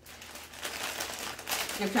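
Plastic candy bags crinkling as they are handled and pressed together in the hands, a dense run of irregular crackles that grows louder toward the end.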